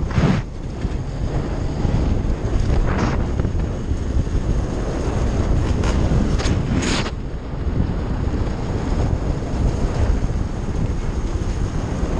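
Heavy wind buffeting on the camera microphone while riding a GasGas EC 250 two-stroke dirt bike, the engine running underneath the wind. A few brief louder swells come through, near the start, about three seconds in and about seven seconds in.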